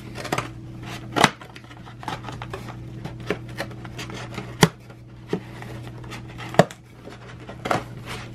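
Kraft cardboard shipping box being handled and folded open by hand: a few sharp cardboard snaps and knocks, about four loud ones, with softer handling noise between. A steady low hum runs underneath.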